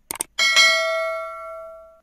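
Subscribe-button animation sound effect: two quick mouse clicks, then a notification bell struck once that rings out and fades.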